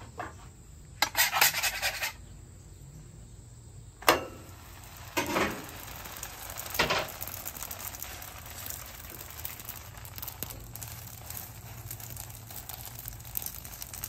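A quick run of light clinks and clatter about a second in and a sharp click near four seconds, then a soft, steady sizzle as raw pizza dough lies on the hot, oiled griddle top and starts to par-cook.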